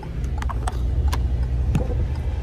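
A car being driven, heard from inside the cabin: a steady low road and engine rumble with scattered light ticks.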